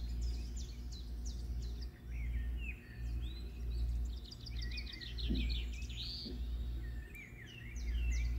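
Small birds chirping repeatedly in the background, short chirps rising and falling in pitch, over a steady low hum. A couple of faint soft knocks come a little past the middle.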